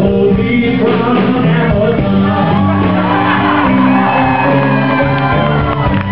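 Live rock band playing a slow blues song, with a man's voice singing and shouting over the guitars and bass.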